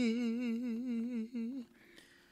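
A man's voice holding one long sung note with a wide, even vibrato, performed live. It breaks off about one and a half seconds in.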